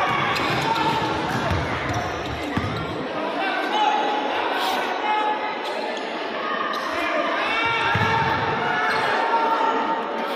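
Basketball being dribbled on an indoor court floor during play, under continuous crowd chatter and shouting in a large gym.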